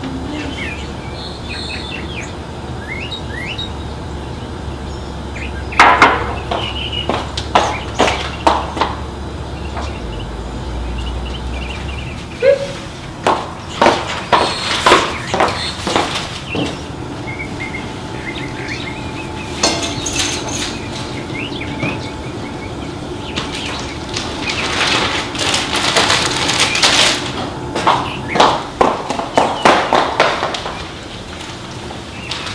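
Faint bird chirps, then several runs of sharp clicks and knocks, the loudest about six seconds in, with another dense run near the end.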